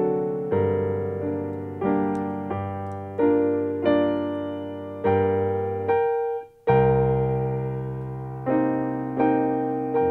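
Piano being played slowly by a self-taught learner working through a song: chords struck about once a second, each ringing and fading away. A little past halfway the sound briefly cuts out before a loud chord.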